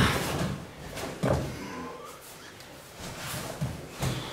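A few dull thuds and shuffles of bare feet and a body on a padded dojo mat as one man is taken down to the floor with an aikido nikyo technique; the clearest thud comes about a second in, with a softer one near the end.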